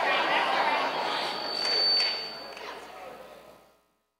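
Several voices talking at once in a large hall, with a thin high whistle loudest about two seconds in. The sound fades out near the end.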